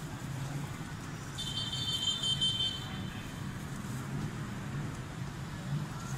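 Street traffic: a steady low hum of passing vehicles on a city road. From about a second and a half in, a high-pitched squeal sounds over it for about a second and a half.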